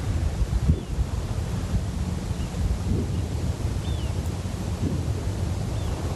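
Wind buffeting the microphone: a gusty low rumble that rises and falls, with a few faint short high chirps.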